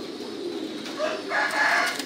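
Caged domestic pigeons cooing as a steady low background, with a rooster crowing over them from about a second in.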